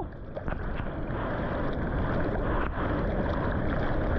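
Seawater sloshing and splashing against a surfboard and an action camera held at the surface, with wind buffeting the microphone, steady throughout.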